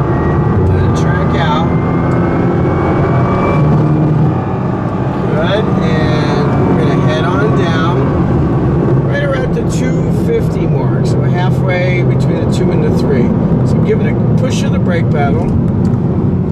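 Nissan sports car's engine and road noise heard inside the cabin at track speed. The engine pitch climbs over the first few seconds as the car accelerates, and a voice talks over it for much of the time.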